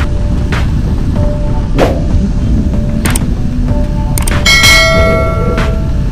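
Constant wind and road rush from a motorcycle ride under quiet background music. About four and a half seconds in, a bell-like ding rings for about a second and a half, the sound effect of a subscribe-button animation.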